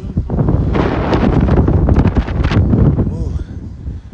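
Wind buffeting a phone's microphone: a loud, rough, deep rumble with irregular crackling spikes for about three seconds, drowning out the surroundings, then easing off near the end.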